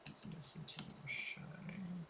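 Computer keyboard keystrokes: a quick run of key clicks as a short terminal command is typed.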